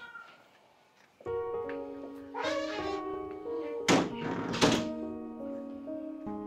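Film background score of held notes that comes in with a thump about a second in, after a moment of near silence. A rising swell follows, then two loud thuds land about a second apart near the middle.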